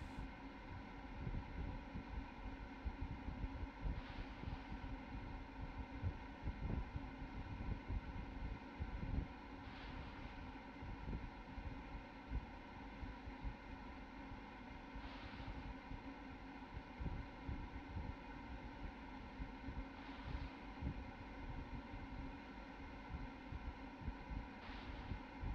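Faint outdoor ambience from a launch-pad microphone: wind buffeting and rumbling on the microphone over a steady low hum, with a soft hiss that swells about every five seconds.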